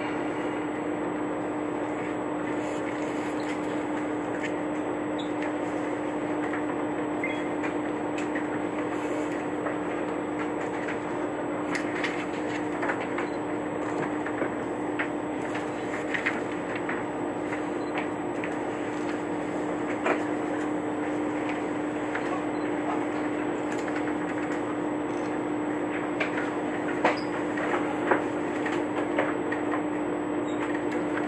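The Setsugekka diesel railcar idling at a standstill, heard from inside the cabin as a steady hum with one low, constant tone. There are a few small clicks and knocks in the second half.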